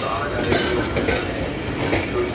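Passenger coaches of the Karakoram Express rolling past as the train pulls in to the station, steel wheels running over the rails in a steady, continuous noise.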